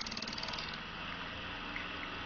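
Homemade axial permanent-magnet disc motor/generator being started slowly through its DC motor controller: a rapid, even ticking for the first part of a second, then a steady low electrical hum as it gets going.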